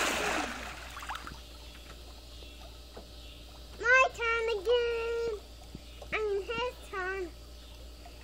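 Pool water splashing as a child swims, right at the start. Then a child's high-pitched voice in two stretches of drawn-out tones, about four and six seconds in, louder than the splash.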